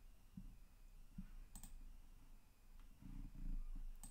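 A few faint computer mouse clicks over quiet room tone, the clearest about a second and a half in.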